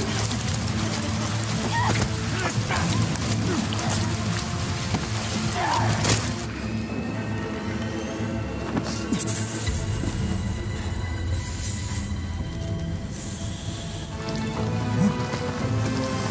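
Film score music over falling rain. The rain hiss drops away about six seconds in, leaving sustained held music tones.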